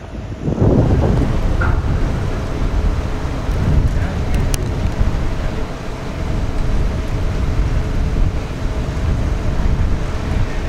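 Low, steady engine rumble from the yard tug coupled to the new subway car, with wind blowing across the microphone. A faint steady hum joins about halfway through.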